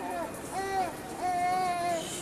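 A voice singing two drawn-out notes: a short one that rises and falls about half a second in, then a longer note held steady to the end.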